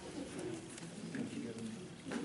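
Indistinct low murmur of voices in a small meeting room, muffled and too faint for words.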